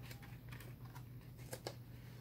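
Faint paper rustling and soft clicks of a CD box-set booklet being handled and its pages turned, with two sharper ticks near the end.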